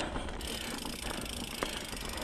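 Mountain bike's rear freehub clicking rapidly while the rider coasts, over the rattle of the bike rolling on a loose stony trail; the fast clicking sets in about half a second in.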